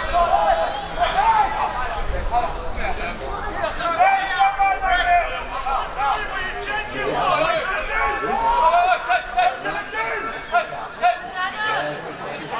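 Several voices talking and calling out at once around a football pitch: overlapping chatter from players and people at the touchline.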